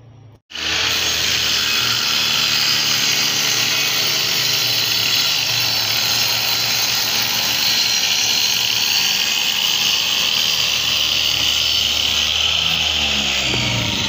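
Handheld electric circular saw running on a homemade sliding steel rail, cutting plywood with a steady, loud whine. It starts abruptly about half a second in and holds steady until the end.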